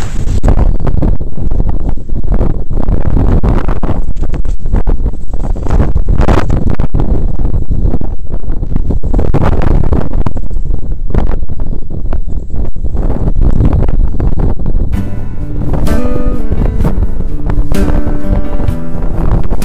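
Loud, gusty wind buffeting the microphone of a camera on a paraglider in flight. About fifteen seconds in, acoustic guitar music starts over it.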